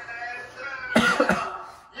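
A single cough about a second in, a sudden loud burst that fades over half a second, with faint voice sounds around it.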